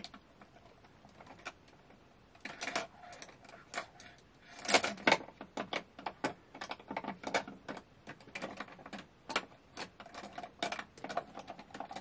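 Irregular light clicks and clatter of small makeup products and brushes being moved about on a table while searching for a concealer brush. The clatter starts about two seconds in and is loudest around five seconds in.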